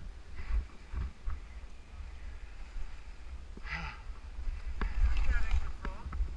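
Wind buffeting a wearable action camera's microphone during a ski run, a deep rumble that swells louder about five seconds in, with the skis' faint hiss over snow beneath it. A voice briefly cuts in twice in the second half.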